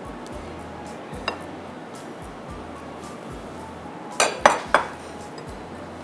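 A ladle clinking against a glass mixing bowl while chia seeds and coconut milk are stirred together: one light knock about a second in, then three sharp clinks in quick succession a little after four seconds in, over soft background music.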